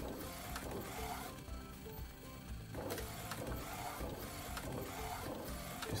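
MP1812 DTF film printer printing: the print-head carriage shuttles back and forth with a steady mechanical whir and light ratcheting clicks of its drive and film feed. The sound briefly drops quieter about a second and a half in, then picks up again.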